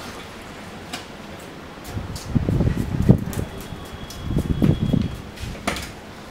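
Brush scrubbing the diesel-soaked drive chain of a Suzuki Hayabusa, in two bouts about two and four and a half seconds in, with a few light clicks of the chain and brush.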